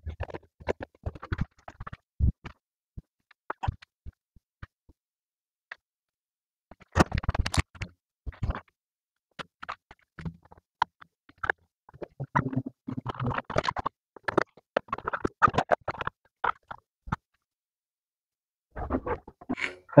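Fast-forwarded handling sounds of car blade fuses being pulled from and pushed back into a dashboard fuse box: scattered quick plastic clicks and scratchy rustles in bunches, with a couple of quiet gaps.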